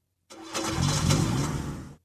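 A car engine starts and revs, beginning about a third of a second in. The sound rises in pitch and cuts off suddenly at the end.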